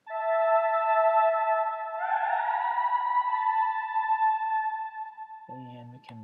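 Synthesizer lead from Logic's ES2 played through heavy SilverVerb reverb. A held note sounds first, then about two seconds in a second note swells in, bending slightly upward. It sustains in a wash of reverb that slowly fades.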